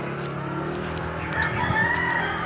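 A drawn-out animal call in the second half, its pitch rising and then falling, over a steady low background murmur.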